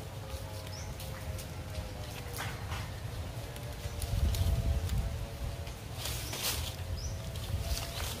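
Green coconut palm leaflets rustling and crackling in irregular short bursts as they are handled and woven into a panel. Under this runs a low rumble that swells about halfway through.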